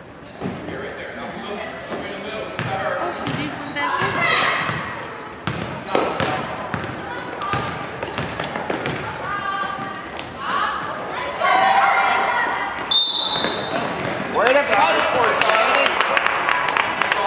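Basketball game play on a hardwood gym floor: the ball bouncing in a run of sharp knocks, sneakers squeaking, and players' and spectators' voices calling out across the gym.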